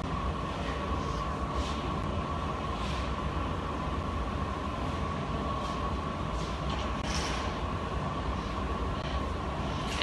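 Steady roar of a glassblower's reheating furnace (glory hole) running, with a faint steady whine over a low rumble.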